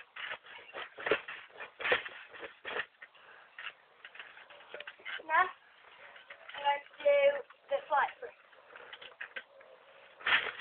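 A person bouncing on a trampoline: a dull thump about every 0.8 s over the first three seconds, then a few short voice sounds in the second half.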